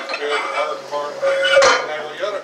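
Weight plates and a collar going onto a steel barbell sleeve: a run of metallic clinks and clanks, ending in a ringing clank about one and a half seconds in that is the loudest.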